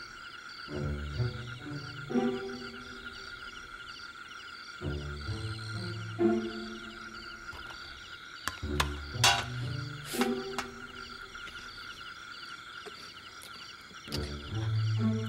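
Night chorus of frogs croaking over a steady high insect trill, with low sustained notes recurring every second or two. A few sharp clicks come about nine and ten seconds in.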